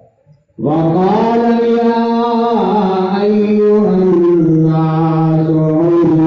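A man's voice in melodic religious chanting starts abruptly after a short pause. He holds long sustained notes, and the pitch steps down about four seconds in.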